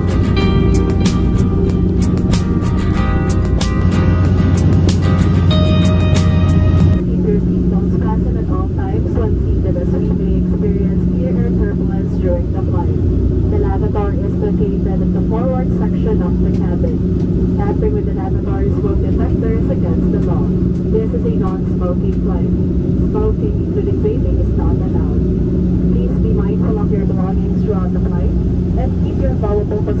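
Music with a beat cuts off suddenly about seven seconds in. It leaves the steady, low drone of an airliner cabin in flight, with faint muffled voices under it.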